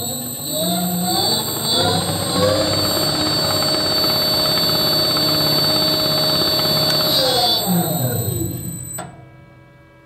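Large three-phase disc sander motor run from an Invertek variable frequency drive, spinning up over the first two seconds or so, running steadily, then braked to a stop within about a second and a half near the end. A high whine from the drive runs with the motor and cuts off suddenly as it stops. The quick stop comes from the brake resistor fitted to the drive.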